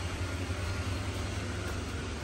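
Blower fans inside inflatable Christmas yard decorations running with a steady low hum and airy noise.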